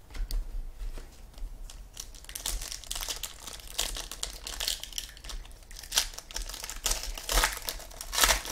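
Foil wrapper of a 2012 Elite Extra Edition baseball card pack being torn open and crinkled by hand: a dense run of crackles from about two seconds in, loudest in two spells in the middle and near the end.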